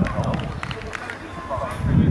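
Voices at an outdoor football pitch: a man's words trailing off at the start and another voice calling out near the end, over a steady low rumble of wind on the microphone.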